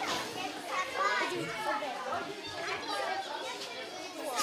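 Several children chattering and calling out at once, their voices overlapping.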